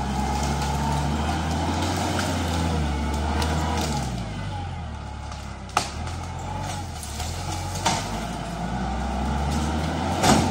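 A compact tractor's engine running under changing load as its front grapple pushes into a tree, the engine note rising and falling. Two sharp cracks stand out, about six and eight seconds in.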